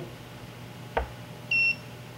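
A light click as the ultrasonic hardness tester's probe is pressed onto a metal part, then about half a second later a short, steady high-pitched beep from the tester marking a completed hardness reading.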